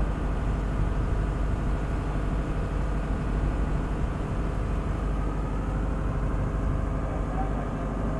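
A ship's engine machinery running steadily at sea: an even, low drone with a constant hum over it.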